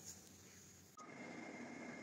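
Near silence: faint room tone, a little louder in the second half.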